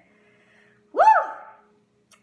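A woman's single high-pitched "woo!" exclamation about a second in, rising then falling in pitch and fading quickly.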